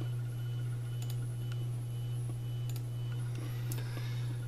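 Steady low hum of a running desktop computer, with a few faint clicks of a mouse button as a dialog box is closed.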